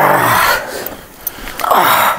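A man's loud, strained vocal groan of effort, falling in pitch, as he forces out the final rep of a dumbbell chest press. A second, shorter groan comes near the end.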